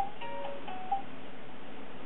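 Rainforest baby activity gym's electronic chime melody, a few bright notes in the first second, then a pause. It is set off by the hanging toy being shaken or pulled.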